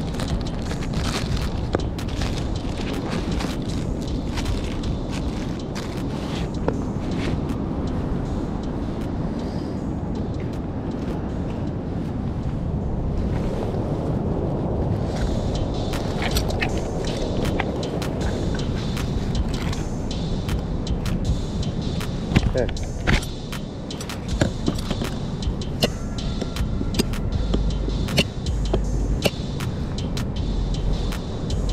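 Clothing rustling and rubbing against a body-worn camera's microphone over a steady low rumble, with many scattered sharp clicks and a few heavier bumps near the end.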